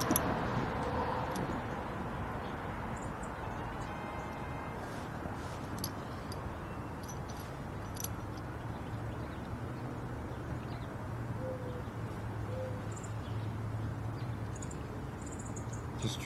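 Steady outdoor background noise with a few faint metallic clicks from a steel three-jaw gear puller as its jaws are set around a wiper arm. A low steady hum runs through the second half.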